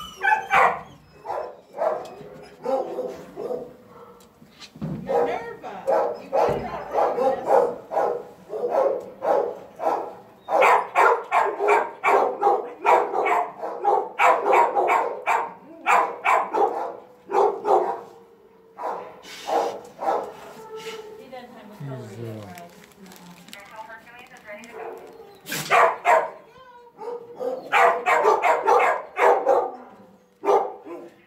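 Shelter dogs barking over and over, in runs of quick barks with short lulls between, loudest about a third of the way in and again near the end. A person laughs at the very start.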